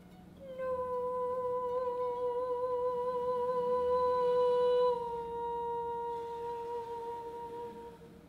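Soprano voice holding one long note with light vibrato, entering about half a second in; about five seconds in the note dips slightly in pitch and softens, and it stops near the end.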